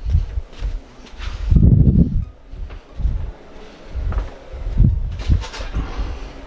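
Footsteps and handheld-camera handling noise: irregular low thumps about every half second, with a longer low rumble about two seconds in.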